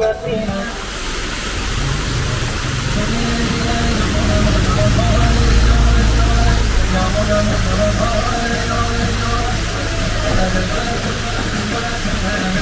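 Outdoor roadside ambience: a steady hiss with a low rumble that swells around the middle, under faint background voices and music.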